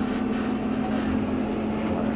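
Fendt 516 Vario tractor's engine running at a steady, even drone, heard from inside the closed cab.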